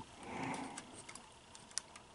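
Faint handling noise: a soft rustle in the first second, then a few light clicks.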